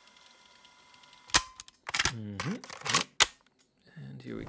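After about a second of near silence, a run of sharp clicks and snaps, about five in two seconds, with short pitch glides sweeping up and down between them, like edited sound effects.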